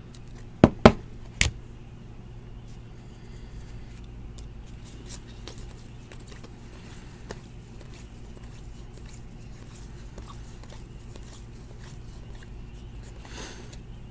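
Baseball cards being handled and flipped through by hand, with three sharp clicks or taps about a second in, then faint card rustles over a steady low hum.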